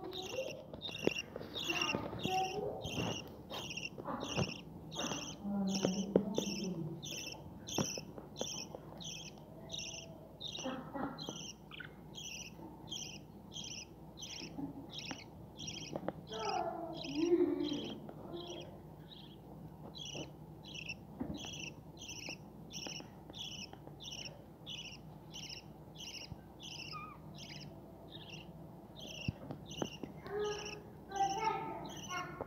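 Budgerigar chicks in the nest giving steady rhythmic begging calls, about two short high chirps a second throughout. There are a few knocks in the first seconds and an occasional lower call.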